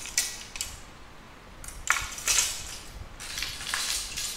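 Fishing rods being shifted and picked up from a row on a tiled floor, their blanks and metal line guides clattering against one another and the tile in three short bursts.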